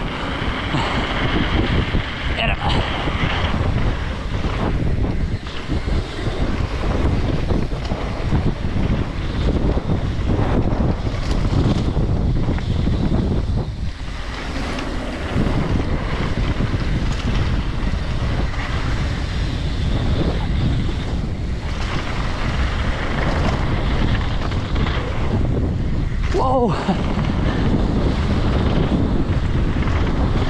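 Wind buffeting an action camera's microphone over the rolling and rattling of a freeride mountain bike descending a trail at speed. The noise is steady, with a brief higher sound near the end.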